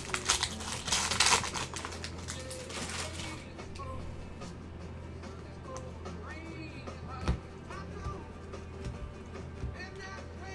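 A foil trading-card pack crinkling and tearing as it is opened. It is loud for about the first three seconds, then gives way to quieter handling of the cards with a few light clicks.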